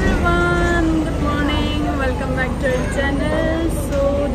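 A woman speaking, over a steady low rumble of road traffic.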